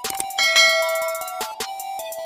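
Electronic intro music with a bright bell ding about half a second in that rings out for about a second: a notification-bell sound effect.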